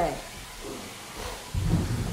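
A brief low, muffled rumble about one and a half seconds in, lasting roughly half a second, with faint room noise around it.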